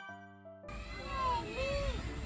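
The tail of a bright music jingle that cuts off suddenly just over half a second in, followed by a small child's high, sing-song vocal sounds, each rising and falling in pitch.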